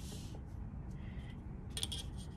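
A steel ruler being shifted and repositioned on a sheet of cardstock over a low room background, with a few light clicks near the end as it is set down.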